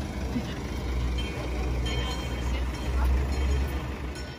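A police van's engine running as it drives slowly past close by, a low rumble that grows to its loudest about three seconds in and then eases off.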